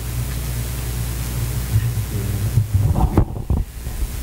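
Steady low hum with an even hiss, as from a room's microphone and amplification system, with a few faint, indistinct voice sounds in the second half.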